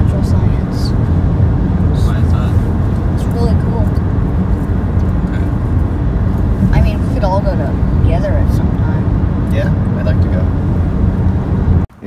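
Steady low road and engine rumble inside a moving car's cabin, with muffled talking under it. The sound cuts off abruptly just before the end.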